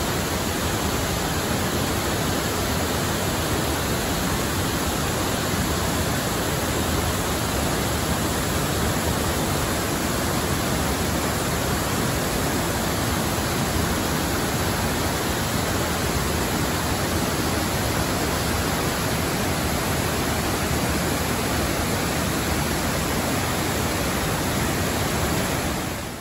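Water sheeting down a dam's concrete spillway and pouring over the ledge at its foot: a steady, loud rush of falling water, even and unbroken throughout.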